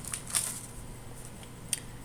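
Snack packaging being handled as one package is set down and a cardboard cracker box picked up: a few short rustles and taps, the loudest about a third of a second in, over a faint steady low hum.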